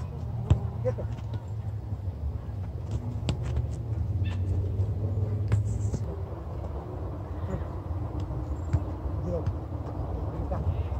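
A soccer ball is kicked and passed on grass: several sharp, separate knocks spread through the drill, over a steady low rumble.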